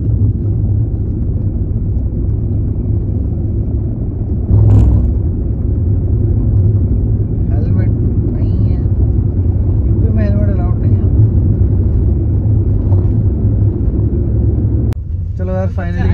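Steady low rumble of road and engine noise inside a moving car's cabin, with a brief louder rush about five seconds in and a sharp click near the end.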